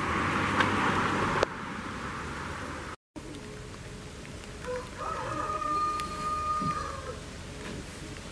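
A rooster crowing once: one long held call with a short lead-in, starting about five seconds in. Before it, in the first second and a half, a loud rush of rustling noise with a couple of sharp knocks.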